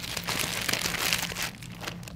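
Newspaper being crumpled and handled, a dense crackling rustle of paper that thins out near the end.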